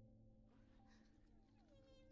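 Near silence, with faint steady high tones and one tone sliding down about three-quarters of the way through.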